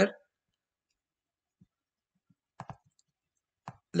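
A few short computer mouse clicks: a quick cluster about two and a half seconds in and a single click near the end, with near silence between.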